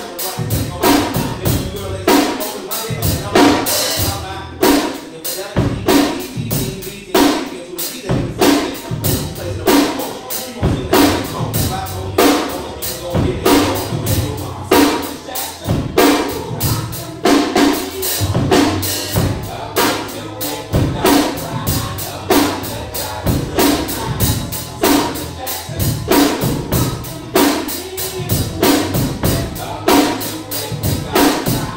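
A 1983 Yamaha Stage Series drum kit with a Ludwig Black Beauty snare, played in a steady hip-hop groove of kick, snare and cymbals. It plays along with a recorded hip-hop track carrying a bass line and rapped vocals.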